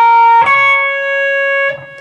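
Electric guitar playing single sustained notes of a harmonic minor scale: one held note, then a step up to a higher note about half a second in, which rings until near the end and fades.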